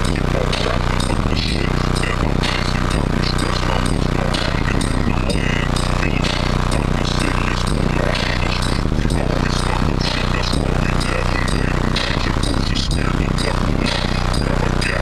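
Music played loud through a car audio system, heard from inside the vehicle's cabin: a steady beat over heavy bass.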